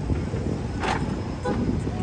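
City street traffic noise: a steady low rumble of vehicles on a Manhattan street, with one brief sharp sound about a second in.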